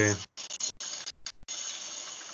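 Steady background hiss from a participant's unmuted microphone on a video call, cutting in and out several times in the first second and a half before running on steadily. It is the unwanted noise that the chair asks to have muted.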